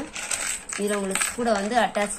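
Thin metal hanging-planter chain clinking and jangling as it is handled in a plastic planter pot, with light metallic clicks. Speech starts about a second in.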